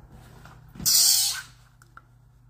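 A short, sharp hiss of breath from a man, about half a second long, roughly a second in, over a faint steady low hum.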